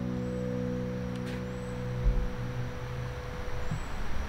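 The final chord of an acoustic bluegrass band (guitars, upright bass, mandolin, banjo) ringing out and slowly dying away. A low thump comes about halfway through.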